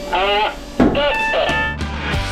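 A voice calling out short countdown counts, each one rising and falling in pitch, then music with a steady beat comes in about three-quarters of the way through.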